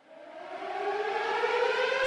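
Air-raid-style siren sample winding up from silence, its pitch rising slowly as it grows louder, opening a DJ mix.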